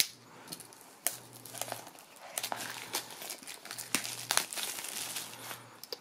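Plastic shrink wrap on a small cardboard box crinkling and tearing in irregular crackles as it is slit with a pocket knife and pulled off.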